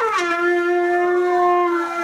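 A trumpet played by a beginner holding one steady note, blown harder as just instructed. The note settles after a small dip in pitch at the start.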